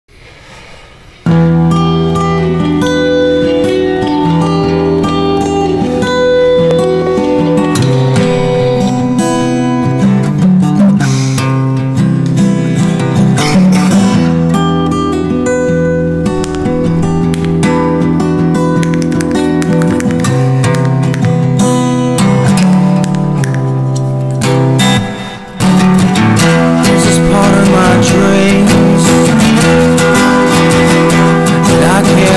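Instrumental intro of a song, with no singing yet: music with held chords that starts suddenly about a second in. It drops away briefly with about five seconds to go, then comes back.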